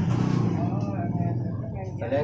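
Speech: a man talking, over a steady low background hum.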